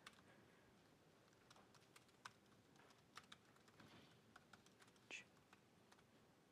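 Faint, scattered keystrokes on a laptop keyboard while code is being typed.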